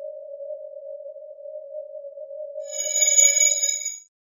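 Synthesized logo sting: a steady, single hum tone, joined near the end by a bright, high shimmering chime; both cut off abruptly.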